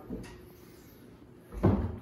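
Wooden closet doors being shut: a light click at the start, then a heavy thump about a second and a half in as the doors close.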